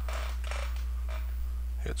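A steady low hum, with a few faint computer-keyboard keystrokes as a file name is typed.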